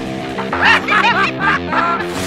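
A cartoon character's voice snickering in a quick string of short laughs over background music, starting about half a second in.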